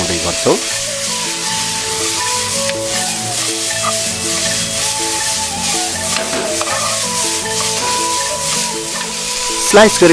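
Cabbage sizzling in a wok over a gas burner as it is stir-fried with soy sauce. A slow instrumental melody of held notes plays over it.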